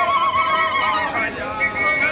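Women ululating in high, fast-wavering trills over group singing. One long trill breaks off about a second in, and other voices carry on.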